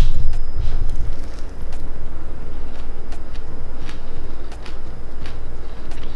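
Someone biting into and chewing a breaded, fried plant-based nugget: short, scattered crunches over a steady low rumble.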